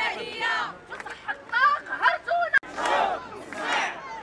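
Crowd of protesters shouting slogans together, with an abrupt cut just past halfway.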